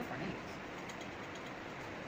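Blue colour pencil scratching on paper in quick back-and-forth shading strokes, over a steady hiss.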